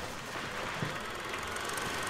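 A low, steady hum of room ambience with one soft thump a little under a second in.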